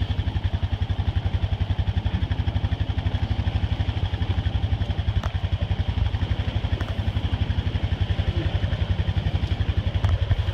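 An engine idling steadily with a rapid, even low pulsing.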